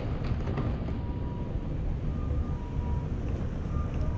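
Steady outdoor rail-yard ambience: a continuous low rumble with wind on the microphone, a few faint brief tones and light clicks.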